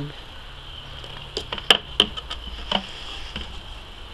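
A handful of sharp clicks and taps from hands working a plastic elbow fitting seated in a rubber grommet in a bucket, loudest a little under two seconds in. A steady high-pitched hum runs underneath.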